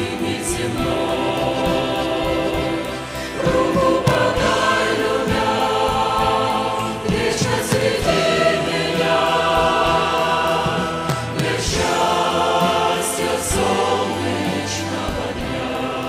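Large mixed choir of women's and men's voices singing a hymn in harmony, moving through long held chords.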